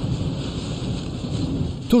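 Storm wind and wave spray washing over a car's windshield, heard from inside the car as a steady rushing noise.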